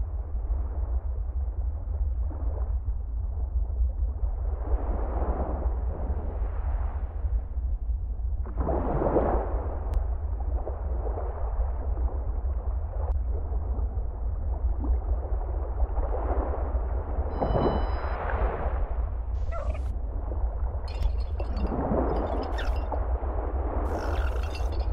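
Ambient drone soundtrack: a steady deep rumble with slow swelling whooshes every few seconds, and faint high crackles near the end.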